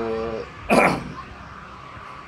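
A man clears his throat once: a single short, harsh burst about three-quarters of a second in, the loudest sound here, just after the end of a drawn-out spoken word.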